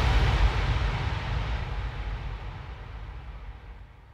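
Low, noisy rumble of the outro soundtrack's deep boom dying away, fading steadily to almost nothing.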